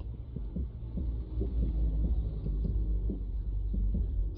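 Background music between narration lines: a deep, steady bass pulse with short low notes above it.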